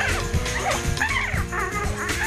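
Live music: a male singer's fast, swooping vocal runs over sustained backing notes and a steady low beat.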